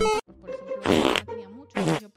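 Short comedic sound-effect bursts over light background music: one at the very start, a louder one about a second in, and another near the end.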